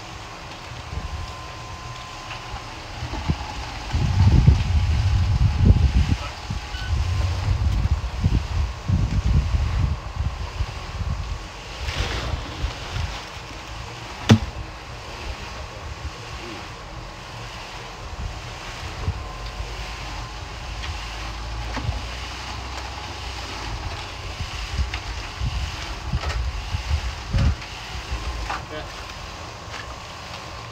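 Wind buffeting the microphone in gusts, as a low rumble that rises and falls. Two sharp knocks about two seconds apart near the middle.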